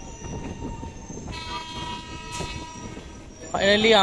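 Local train running over the rails with a steady rumble. A train horn sounds as one steady note from a little over a second in, lasting about two seconds.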